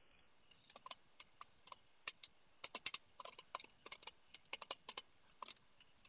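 Typing on a computer keyboard: a faint run of irregular keystrokes, starting about half a second in and stopping shortly before the end.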